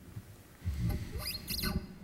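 A low rumble starts a little over half a second in, and several short high squeaks gliding up and down follow.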